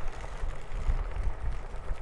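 Low, uneven rumble of a Onewheel ride along a packed-dirt trail: ground noise from the board's tyre rolling over the dirt, and air buffeting the moving microphone.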